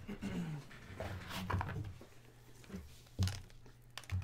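Hard plastic card holders being handled and set down on a table: a few light clicks and knocks, the loudest a knock with a low thump about three seconds in. A faint murmured voice comes near the start.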